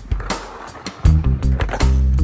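Instrumental guitar-and-bass music. It drops out for about a second near the start, and there a skateboard can be heard rolling and scraping over a low rail on concrete.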